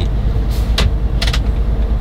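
Steady low rumble of a car heard from inside the cabin, with a few short sharp clicks: one about half a second in, one just before a second, and a quick pair a little after a second.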